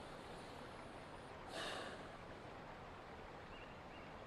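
Quiet outdoor film-scene ambience: a faint steady hiss, with one brief breathy sound about one and a half seconds in.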